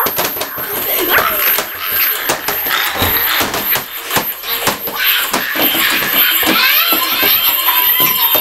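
A child laughing and squealing amid repeated knocks and clatter of plastic toys being handled close to the microphone.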